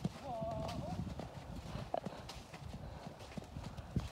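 Faint, muffled hoofbeats of a trotting horse on arena sand, with a brief faint voice about half a second in.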